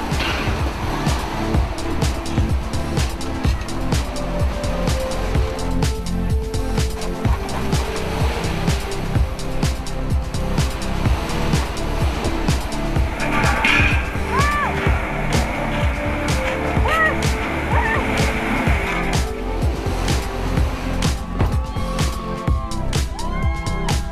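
Background music with a steady beat, with a car engine running underneath it.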